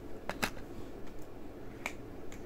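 A few soft mouth clicks, lips and tongue parting during a pause in speech: two close together near the start and one more near the end, over a low room hiss.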